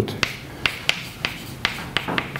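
Chalk writing on a blackboard: a series of sharp, irregular clicks and taps as the chalk strikes the board with each stroke.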